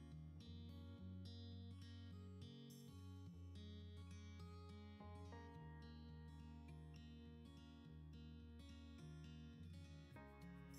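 Faint background music of plucked acoustic guitar, with a note struck several times a second.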